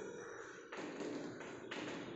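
Chalk tapping and scraping on a blackboard as letters are written: three short strokes in the second half, over a steady low hum.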